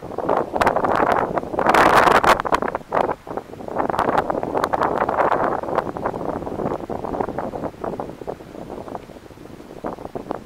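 Wind buffeting the camera microphone in strong gusts with a crackling, rough noise, loudest about two seconds in and again around the middle, then easing off toward the end.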